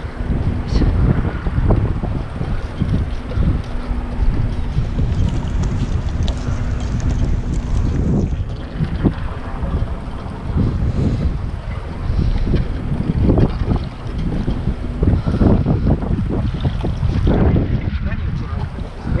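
Wind buffeting the microphone in loud, uneven gusts. A faint low steady hum runs underneath through the first half and stops about eight seconds in.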